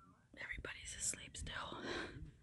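A person whispering close to the microphone.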